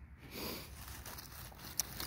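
Faint handling noise of antique glass bottles being shifted about on dry leaves: a soft rustle about half a second in and one sharp click near the end.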